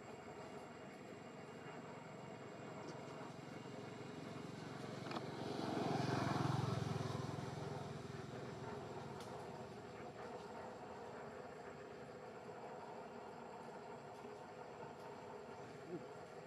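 A motor vehicle passing at a distance, swelling up and fading away over a few seconds in the middle, over faint steady outdoor background noise.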